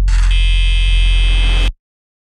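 Closing seconds of a dark electronic track: a deep bass drone joined by a harsh, high buzzing synth tone, both cutting off abruptly near the end into silence as the track ends.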